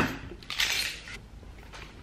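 A cardboard pedal box being opened: a sharp tap at the start, then a brief scraping rustle of about half a second as the box slides out of its sleeve.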